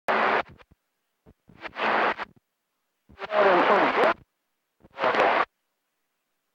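CB radio receiver on channel 28 picking up four short bursts of noisy, unintelligible reception, with the squelch cutting to silence between them. The longest burst, about three seconds in, carries sliding whistle-like tones.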